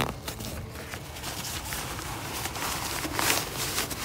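A rain jacket being pulled out of a backpack's top pocket: fabric rustling and crinkling, with scattered small clicks and knocks from handling, busiest a little after halfway.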